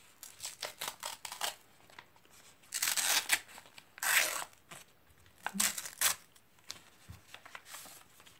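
A paper envelope being slit open with a small knife: a run of short scraping cuts in the first second and a half. This is followed by louder bursts of tearing and rustling paper, about three, four and six seconds in, as the contents are pulled out and unfolded.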